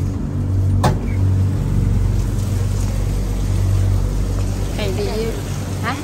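Steady low hum of a stopped vehicle with passengers aboard, with a single sharp click about a second in and brief voices near the end.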